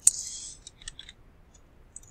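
Computer keyboard keys clicking as a few letters are typed, a handful of separate clicks. It opens with a sharp click followed by a brief hiss lasting about half a second.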